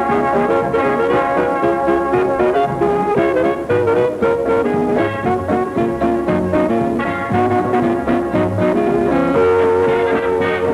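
Swing-era big band playing, with the brass section and trombone carrying the tune.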